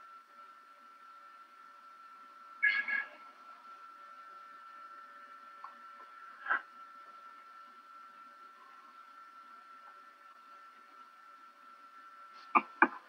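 Quiet room tone over a video-call microphone, with a faint steady whine. It is broken by one short, louder sound about three seconds in and a brief click about six and a half seconds in.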